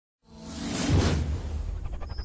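Whoosh sound effect from a logo intro sting, starting about a quarter second in, swelling to a peak about a second in and then fading, over a steady deep bass rumble.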